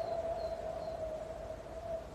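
A man's long, slow exhale, blown out steadily as a breathing-exercise out-breath, with a single steady tone running through it.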